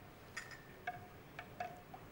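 Serving ladle clinking against china dishes as soup is dished up: about five short clinks, each with a brief ring.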